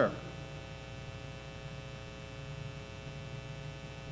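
Steady electrical mains hum with a buzz of many even overtones, unchanging throughout.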